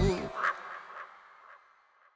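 The close of a Bollywood pop song: a singer holds the last word over the band's final chord, which stops about a third of a second in. A fading echo follows, with two faint short sounds in it, and dies away to silence near the end.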